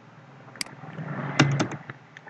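A few sharp clicks, one about half a second in and a quick cluster around one and a half seconds, with a short breathy rustle under the cluster, over a low steady hum.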